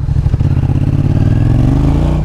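Yamaha XSR700's 689 cc parallel-twin engine accelerating under throttle, its pitch rising steadily; it pulls strongly.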